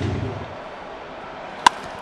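A single sharp crack of a wooden baseball bat meeting a pitched ball about a second and a half in, over a faint steady hiss of stadium ambience. It is solid contact: the ball is driven deep to left field for a home run.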